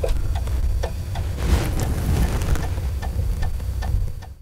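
E-mu SP-1200's built-in floppy disk drive reading a disk as it loads sequences and sounds: a steady whirring rumble with a run of irregular ticks from the drive mechanism.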